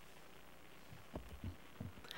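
Quiet room tone, then three or four soft, low thumps in the second half from a podium gooseneck microphone being handled and adjusted.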